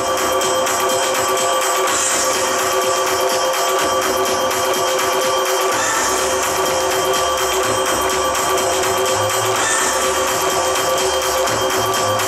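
Recorded yosakoi-style dance music played loudly over a stage sound system, with sustained held notes and a low bass part that comes in about halfway through.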